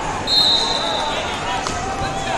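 A referee's whistle blown once, a steady high note lasting under a second, starting just after the beginning, over voices and chatter in a crowded wrestling hall.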